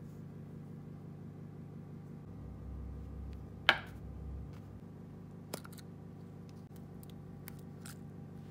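A small clear plastic container is set down on a table with one sharp knock, then gives a few light plastic clicks as its lid is taken off, over a steady low hum.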